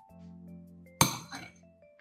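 Soft background music with sustained notes, broken about a second in by a single sharp clink that rings briefly before dying away.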